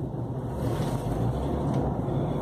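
Steady engine and road noise heard from inside a moving car, a low hum with a haze of tyre and wind noise.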